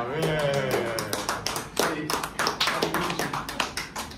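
A small audience clapping: scattered claps that thicken into irregular applause after about a second, with voices and laughter at the start.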